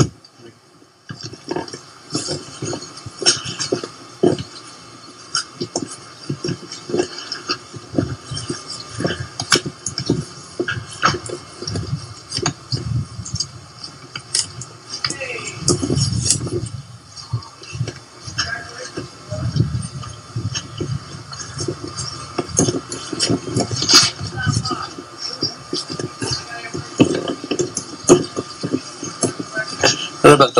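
Footsteps and handling noise of people walking outdoors: irregular clicks and knocks, with low rumbling bursts and faint, indistinct talk.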